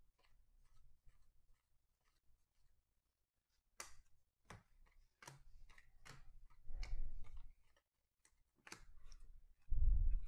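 Baseball cards being flicked through one at a time in the hands, each card's stock giving a light snap. The snaps are faint and steady at first and get louder and more spaced about four seconds in, with dull knocks of the cards against the table around the middle and near the end.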